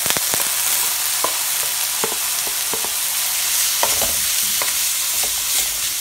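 Grated cauliflower, green pepper, onion and prawns sizzling in olive oil in a nonstick wok while a wooden spoon stirs them, with scattered taps and scrapes of the spoon against the pan.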